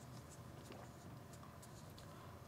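Near silence: room tone with a low hum and a few faint scattered ticks.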